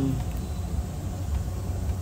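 Steady low background rumble with no distinct knocks or clicks.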